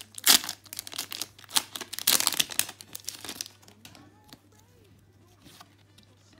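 Foil-lined Pokémon booster-pack wrapper crinkling and tearing as it is ripped open by hand: a dense run of loud crackles for about three and a half seconds, then much quieter.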